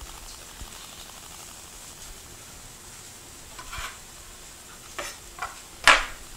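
A pan of vegetables sizzling steadily on the stove. Near the end come a few short knocks, the last the loudest, from a chef's knife on a wooden cutting board.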